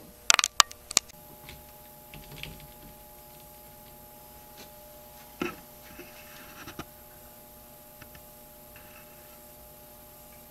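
A quick run of four or five sharp clicks in the first second. After that a desktop PC runs with a faint steady hum, broken by a few soft, scattered clicks.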